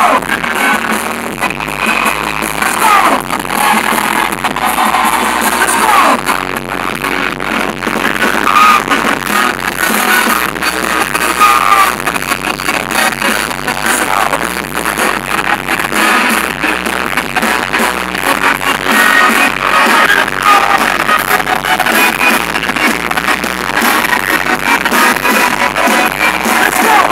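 Live band music played loudly through a concert PA, with voices singing over a regular drum beat.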